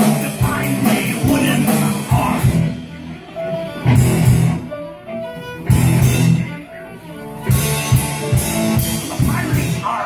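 A live ensemble of violins, banjo, electric guitar and drum kit plays a rock-styled tune in stop-start phrases, with short quieter gaps between loud drum-accented bursts.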